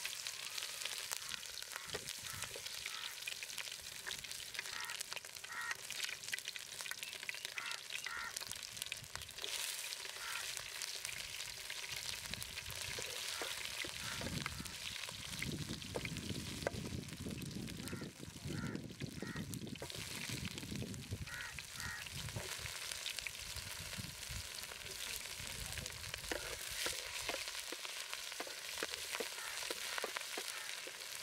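Chopped vegetables frying and sizzling in oil in an aluminium pot over a wood fire, stirred with a wooden spoon. The sizzle is steady and crackly, and it thickens from about halfway through for several seconds.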